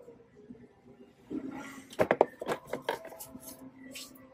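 Handling noise of a potted plant: after a quiet second, a run of short clicks and soft rustles as a plastic nursery pot and its leaves are handled and set back on a store shelf.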